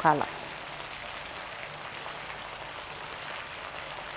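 Chunks of meat sizzling in a frying pan, a steady even hiss of searing fat and juices.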